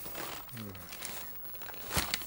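Newspaper pages rustling and crackling as they are handled and turned, with the sharpest crackle at the very end. A short low voice sound falls in pitch about half a second in.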